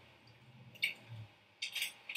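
Mostly quiet, with a few faint short clicks, one a little under a second in and a quick cluster near the end.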